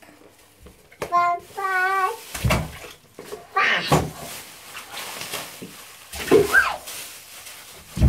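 A young child's voice calling out in several short, high-pitched calls, one rising in pitch, with a plastic bag rustling as it is handled and a few dull thumps.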